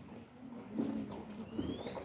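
Faint outdoor quiet with a few bird calls in the second half: quick falling chirps and one rising whistle near the end, over a low murmur.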